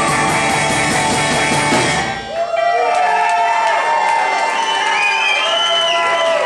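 Live rock band with electric guitars, accordion and drum kit playing, then cutting out suddenly about two seconds in. After that, sliding, wavering held tones carry on alone, typical of a theremin, with a few higher rising glides near the end.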